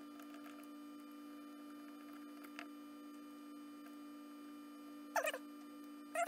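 A steady low electrical hum under faint ticks and clicks as the small metal reversing unit of a model locomotive is handled. A short squeak comes near the end.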